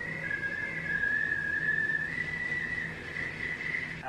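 Stovetop whistling kettle whistling at the boil: one steady high whistle that drops slightly in pitch for a while and steps back up about halfway through.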